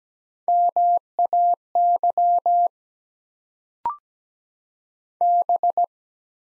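A Morse code practice tone at 17 wpm sends the word "MAY" (dah-dah, di-dah, dah-di-dah-dah) as one steady tone keyed on and off. A short courtesy beep about four seconds in marks the word complete, and near the end the tone starts the next word with the letter B (dah-di-di-dit).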